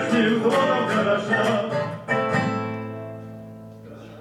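Two men singing a song to two acoustic guitars; about halfway through the singing stops on a strummed guitar chord that rings out and slowly fades.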